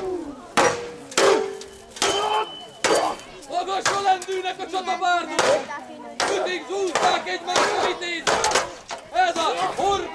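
Medieval weapons striking shields and armour in a staged duel: a quick, irregular series of sharp blows, about a dozen, some leaving a short metallic ring. Shouting voices run under the blows.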